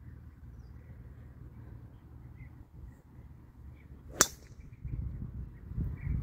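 A golf driver striking a ball off the tee: one sharp crack about four seconds in, over a faint low rumble.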